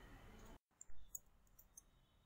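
Near silence in a pause of narration, broken by two soft clicks about a second in.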